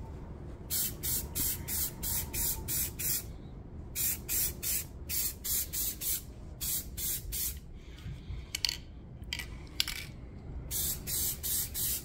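Aerosol spray-paint can hissing in short bursts, about three a second, in several runs separated by brief pauses, as paint is sprayed in quick passes over flat steel parts.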